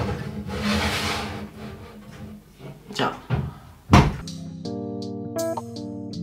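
A metal baking tray of lasagne slid onto an oven rack, with handling clatter, then one loud thud about four seconds in as the oven door is shut. Instrumental background music with plucked guitar and keyboard notes follows right after.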